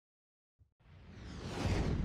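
Silence, then about a second in a whoosh sound effect swells up, with a deep rumble underneath, leading into a production company's logo sting.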